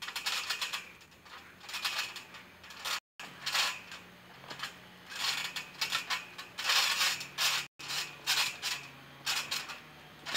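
Trampoline springs squeaking and jangling in irregular bursts, roughly one a second, as someone bounces and lands on the mat.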